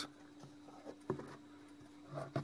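Quiet handling sounds as the lid of a copper-tape-lined wooden box is lowered shut: a few faint taps and a light knock about a second in, over a faint steady hum.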